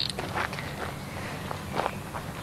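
A few soft, scattered knocks over a faint steady background hiss.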